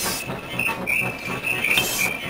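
Experimental film soundtrack: a steady clattering rhythm of about four beats a second under a high held tone that swells now and then.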